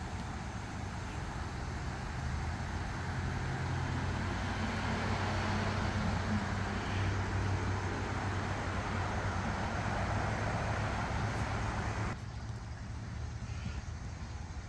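Steady road traffic noise with a low hum, swelling slightly and then dropping away abruptly near the end.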